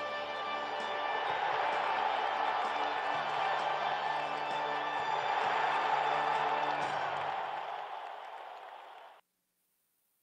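Countdown video soundtrack: music giving way to a swelling wash of noise with a low steady tone under it, which fades and then cuts off suddenly about nine seconds in as the countdown runs out.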